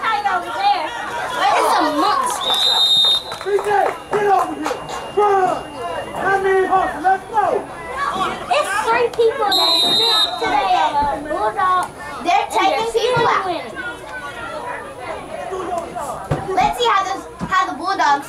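Overlapping, unintelligible children's chatter and calls at a youth football game. Two short, high whistle blasts come through the voices, one about three seconds in and one about ten seconds in.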